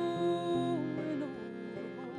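Folk singing with banjo and piano accordion: a woman's voice holds a long note that bends down and ends about a second in, leaving the accordion's held chord and light banjo plucks.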